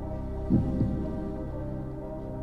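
Background music of sustained held tones over a low pulsing beat, a quiz-show style tension bed under a final answer. A short voice sound comes in briefly about half a second in.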